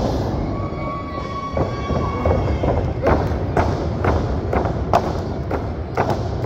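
Sharp thuds and slaps from wrestlers grappling on a wrestling ring mat, about eight hits coming roughly every half second from a second and a half in. A thin steady tone holds for about two seconds starting half a second in.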